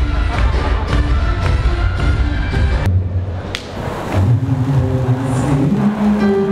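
Music with a heavy bass beat that breaks off about halfway through. After a short gap, a softer tune with long held notes comes in.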